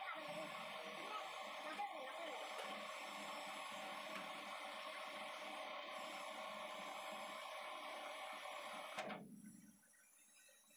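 Metal lathe running with a universal-joint shaft spinning in the chuck: a steady machine whine with several held tones. It drops away sharply about nine seconds in as the spindle stops.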